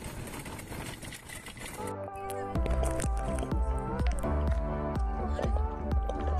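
About two seconds of steady noise from a horse-drawn cart ride on a dirt track, then background music with a steady beat and a melody comes in and carries on.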